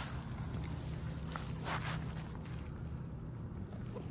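Low steady rumble of wind on the microphone, with a few brief rustles in dry hay, about one and a half and two seconds in.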